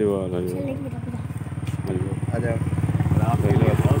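Low, pulsing engine of a motor vehicle on the road, growing louder toward the end, with voices talking over it.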